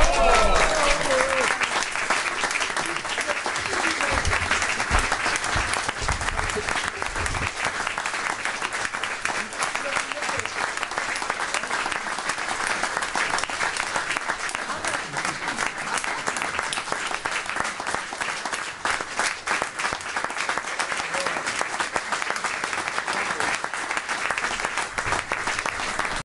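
Audience applauding steadily, with dense clapping and a few voices among it.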